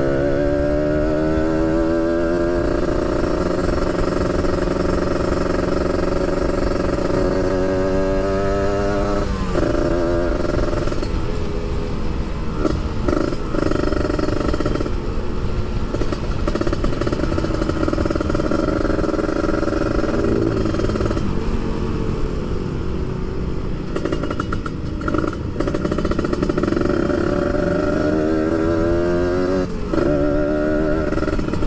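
A Kawasaki Ninja 150 RR's two-stroke single-cylinder engine running as the bike is ridden. Its pitch climbs as it revs up a few times, with short dips between the climbs.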